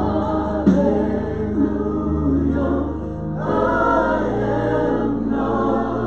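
Live worship band: several voices singing together through microphones over held keyboard chords and acoustic guitar, in a slow gospel-style worship song.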